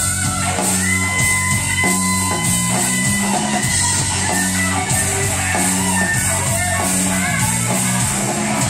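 Live rock band playing an instrumental passage: electric guitar over a drum kit, loud and steady, with long held guitar notes and a regular beat.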